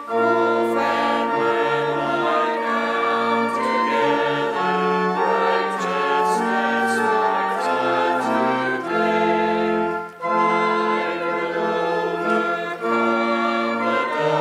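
A small group of voices singing an Advent hymn in parts, accompanied by an organ, with held notes and a brief break between lines about ten seconds in.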